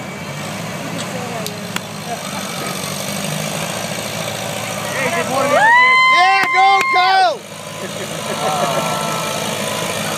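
Vintage farm tractor engine running steadily under load as it drags a tractor-pull weight sled. About five and a half seconds in, a loud high, wavering tone rises over it, holds for under two seconds and stops suddenly.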